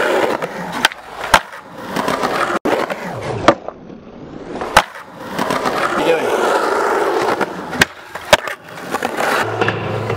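Skateboard wheels rolling over concrete, broken by sharp clacks of the board striking the ground: about one and one and a half seconds in, again around three and a half and five seconds, and twice close together near eight seconds.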